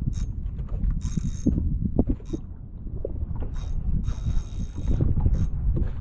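Tsunami SaltX 4000 spinning reel being cranked under heavy load against a hooked tarpon, its gears whirring and clicking, with two louder stretches of winding about a second in and about four seconds in. A steady low rumble runs underneath.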